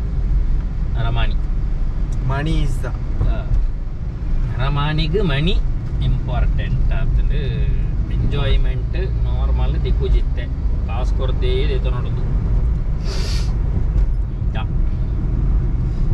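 Steady low rumble of a car's engine and tyres heard from inside the cabin while driving along a road.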